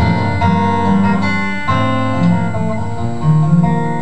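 Solo acoustic guitar strumming a run of chords, the notes ringing on between strokes.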